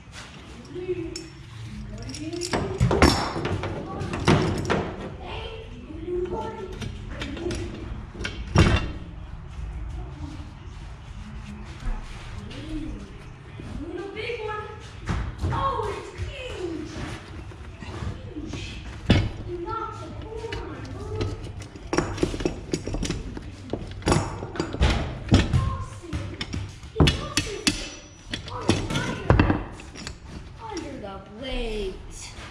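Irregular knocks and clanks of steel roller chain and a claw hammer on a manure spreader's wooden apron floor and steel side as the new chain is fitted. The loudest knocks come about 3, 4, 9 and 19 seconds in, with a busy run of them over the last eight seconds.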